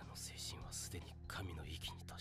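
Soft, hushed anime dialogue in Japanese over a low, sustained background music score, played back from the episode.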